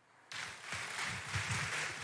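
Congregation applauding; the clapping starts about a third of a second in.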